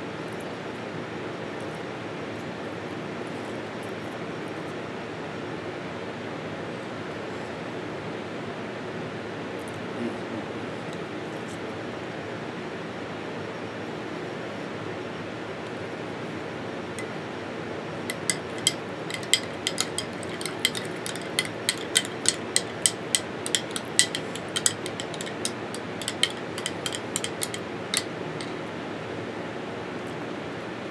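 A metal spoon clicking and scraping against a glass jar while scooping out cheese dip: a quick, irregular run of sharp clinks that starts about halfway through and stops shortly before the end, over a steady low background noise.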